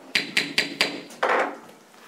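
Gavel rapped four times in quick succession, sharp knocks with a slight ring, calling the meeting to order. A short rustling burst follows.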